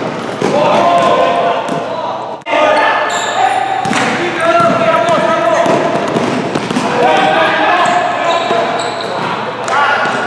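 Basketball game in a gymnasium: the ball bouncing on the hardwood court, sneakers squeaking, and several players' voices calling out over the play.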